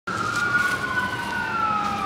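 Emergency vehicle siren wailing, its pitch slowly falling.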